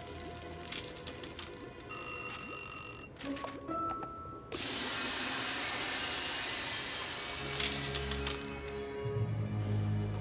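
Cartoon background music with sound effects: a brief bright ringing tone about two seconds in, then a loud, long spraying hiss from about four and a half seconds in as a cartoon hairspray ray blasts a cloud of spray.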